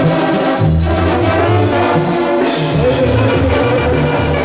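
Live band playing dance music, led by trumpets and trombones over a steady moving bass line, at full volume.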